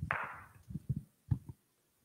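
Handling noise from a handheld microphone as it is carried: a brief rustle at the start, then a few dull thumps about a second in.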